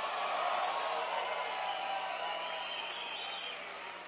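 Audience applause with some cheering, rising just before the pause and easing off gradually toward the end.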